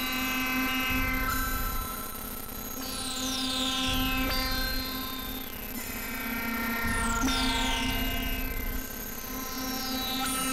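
Experimental synthesizer drone music: layered steady tones over a low hum, with a high-pitched falling sweep that recurs about every three seconds.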